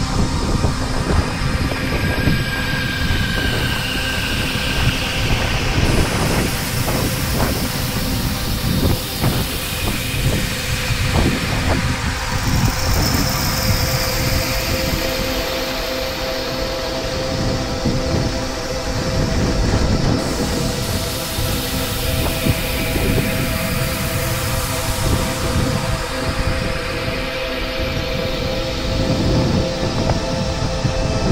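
Skis sliding fast over packed snow with wind on the camera microphone: a steady, rumbling, scraping rush.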